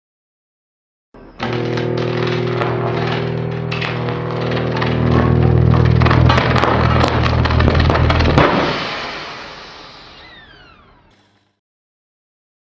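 Interlude music sting or sound effect under a title card: held low tones with sharp crackles over them that swell louder, then fade out over about three seconds with falling whistle-like sweeps.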